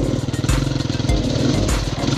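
Dirt bike engine running on a tight forest trail, heard from the rider's own bike, with a music track's steady beat of about two thumps a second underneath.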